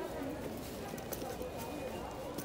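Indistinct background chatter of shoppers in a busy store, steady throughout, with scattered light clicks and knocks.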